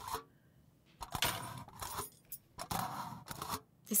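Fork tines punching through aluminium foil stretched over a bowl: a run of sharp, crinkly pops, several in a row about every half second, starting about a second in.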